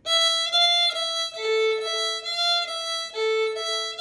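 Solo violin playing a short beginner passage of separate bowed notes, stepping back and forth between E and F natural with a jump down to a longer-held B on the A string, twice.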